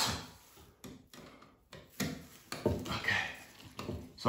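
A few light clicks and rustles of electrical wires and connectors being handled and pushed up into a ceiling junction box, in a series of short separate sounds with a small cluster about two and a half to three seconds in.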